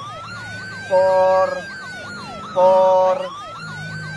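An emergency-vehicle siren slowly rising and falling in pitch, with two loud, steady honks over it, the first about a second in and the second past the middle, each lasting about half a second.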